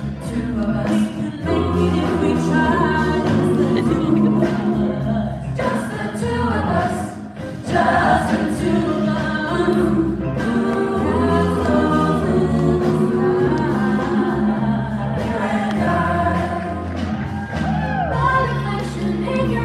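A mixed choir singing a song together. It drops briefly in level about seven seconds in, then comes back stronger.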